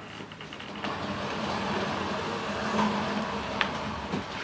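A fabric sofa being pushed across a wooden floor: a steady scraping noise that starts about a second in and runs on, with one sharp click near the end.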